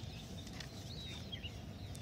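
Quiet outdoor background: a low steady rumble with a few faint, short bird chirps near the middle.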